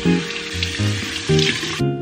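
Water running from a sink tap into cupped hands, an even splashing hiss that cuts off suddenly near the end, over background music.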